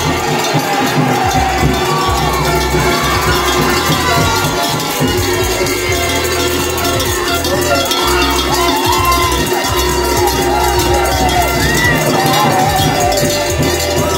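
Large metal cowbells rung hard and continuously by rugby supporters, with a crowd cheering and shouting.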